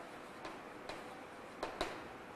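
Chalk writing on a blackboard: faint scraping with a few light ticks as the chalk strikes the board, two of them close together near the end.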